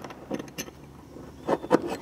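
Faint metallic clicks and scrapes of a small steel bracket being handled and held against a car's underbody beside the driveshaft flange, a few light knocks about half a second in and again near the end.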